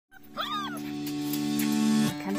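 A puppy gives a brief high whine that wavers up and down in pitch, about half a second in, over background music holding a sustained chord that swells louder.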